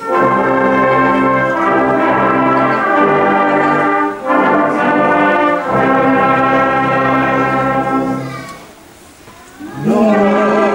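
Concert wind band playing slow, sustained brass-led chords, with a short break about four seconds in. The chord dies away about eight and a half seconds in, and a new note swells up right at the end.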